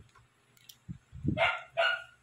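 A dog barking twice in quick succession, about a second and a half in.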